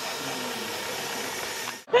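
Small electric drive motors of two mini sumo robots running steadily while the robots are locked together, pushing against each other at a standstill; the sound cuts off suddenly near the end.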